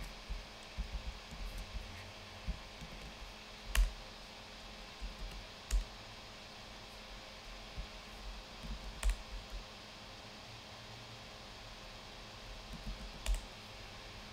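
Typing on a computer keyboard in short runs of keystrokes, with a few louder single key hits. A quiet stretch of a couple of seconds comes before a last few strokes near the end.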